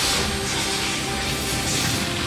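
Cartoon energy-blast sound effect: a loud, steady rushing noise that starts suddenly, with dramatic music underneath.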